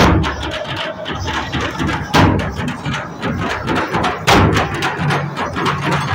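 Drums beaten in a fast rhythm for a Gond tribal dance, with a heavier stroke about every two seconds, amid crowd noise.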